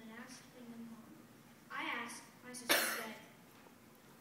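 Brief stretches of a person's voice, then a single loud cough nearly three seconds in.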